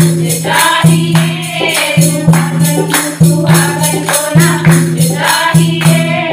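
A group of women singing a Hindu devotional kirtan together, with hand clapping and percussion keeping a steady quick beat.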